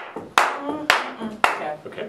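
Hand claps: three sharp claps about half a second apart, with voices talking between them.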